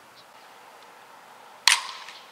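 Softball bat striking a pitched softball: one sharp crack about one and a half seconds in, with a brief ringing tail.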